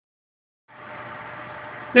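Steady background hum and hiss, starting about two-thirds of a second in after silence.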